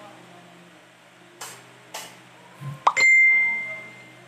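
A single sharp ding about three seconds in: a utensil struck against a plate, leaving a clear high ringing tone that fades over about a second. A soft handling thump comes just before it.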